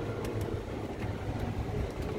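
Steady low rumble of a moving open-sided cart, with wind on the microphone.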